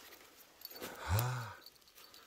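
A man's brief wordless voice sound, a low hum or sigh about a second in, over faint rustling and small ticks.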